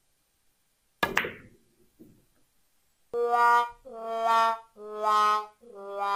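A billiard cue tip strikes the cue ball sharply about a second in, followed by a faint knock of ball contact a second later. From about three seconds in comes a comic sad-trombone sting: four descending notes, the last one held, marking the missed shot.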